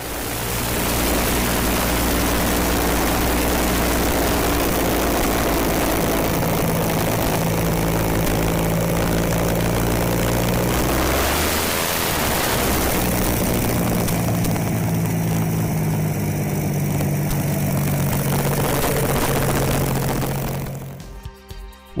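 The six-cylinder Rolls-Royce Continental air-cooled aircraft engine of the TMC Dumont motorcycle running as the bike is ridden along, its note rising and falling with the throttle. The sound changes abruptly about halfway through.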